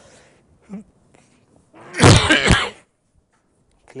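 A person sneezing once, a loud burst about two seconds in.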